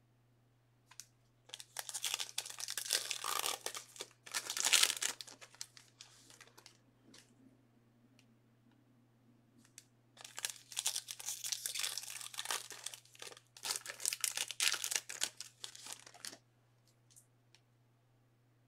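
Packaging being torn and crumpled by hand, a crackly wrapper sound in two spells of several seconds each, loudest about five seconds in.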